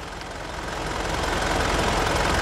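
Mitsubishi Pajero Dakar's 3.2-litre 4M41 four-cylinder turbodiesel idling, heard from under the vehicle, growing steadily louder.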